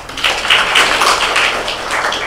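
Audience applauding: many hands clapping in a dense, even patter that eases slightly near the end.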